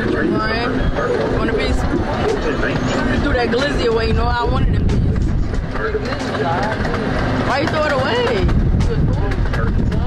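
Open-air park train running, a steady rumble and noise from its motion, with the voices of riders over it.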